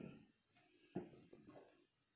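Near silence, with a few faint soft knocks and rubs from a shrink-wrapped cardboard game box being turned over in the hands, about a second in.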